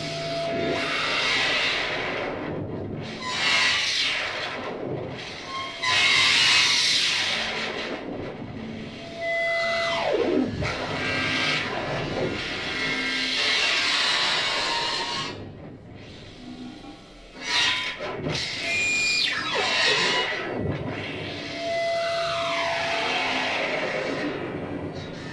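Free-improvised noise music: dense noisy swells that rise and fall, several pitch sweeps falling from high to low, and brief steady held tones.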